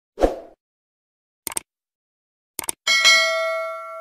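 Subscribe-button animation sound effect: a short pop, two quick double clicks about a second apart, then a bell ding that rings on and fades.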